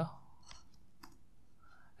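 Two faint clicks from computer controls being worked, about half a second apart, over low room hiss.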